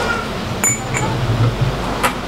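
Crystal glass clinking: a sharp clink with a high ring about half a second in and a lighter one about a second in, as the glass stopper is set back into a cut-crystal decanter.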